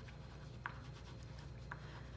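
Faint scratching of a chalk pastel rubbed on paper while filling in small shapes, with two short, slightly louder strokes about a second apart.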